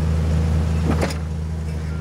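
Jeep Wrangler's engine running steadily at low revs, a low drone while the Jeep crawls slowly over a rock ledge. Two short knocks come about a second in.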